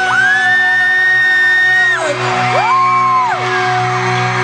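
Live pop-rock band playing in an arena, with fans screaming close to the recorder: one long high scream held for about two seconds, then a shorter one about halfway through.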